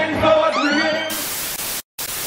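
Music is cut by a rising sweep, then a loud hiss of white-noise static starts about a second in. The static drops out for a split second near the end and comes back. It is a TV-static transition sound effect.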